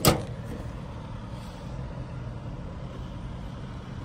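A single sharp metallic bang as a parcel locker compartment door is shut, followed by a steady low hum of a vehicle engine running.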